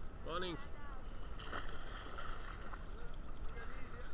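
Sea water lapping and sloshing around a camera held at the surface, over a low wind rumble. A short voice sound comes near the start, and a brief splashy burst follows about a second and a half in.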